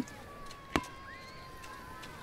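Two short, sharp clicks about three quarters of a second apart, over a faint thin steady tone: cartoon sound effects.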